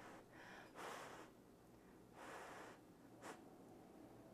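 Near silence: two faint breaths as a person takes a mouthful of spaghetti from a fork, about a second apart and a second and a half apart, with a small click a little after three seconds.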